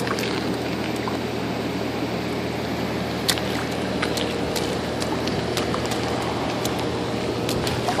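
Toddler's boots stepping and splashing lightly in a shallow puddle on gravel: a few small splashes and clicks over a steady low hum and hiss.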